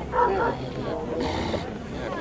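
Voices of people talking in the background, with a dog barking among them.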